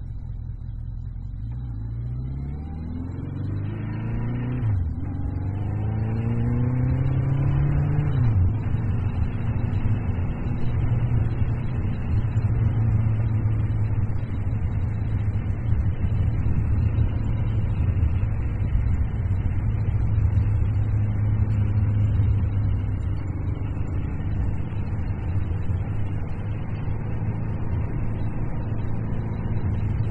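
The 1982 Yamaha XJ1100 Maxim's air-cooled inline-four engine accelerating hard, its pitch rising through the gears with two upshifts at about five and eight seconds in. It then settles into a steady cruise under a constant rush of wind and road noise.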